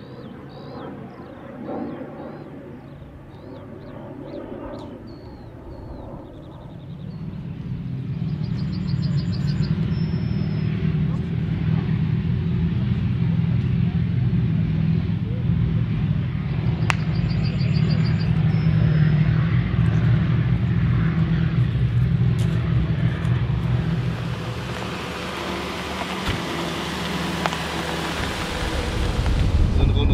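Military armoured vehicles driving, their engines a deep, steady drone that swells in about seven seconds in and holds. It eases off for a few seconds, and loud rushing wind and road noise build near the end.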